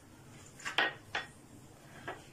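Two short clinks of kitchenware being handled, such as small spice containers knocking on a hard counter, about half a second apart, the first the louder.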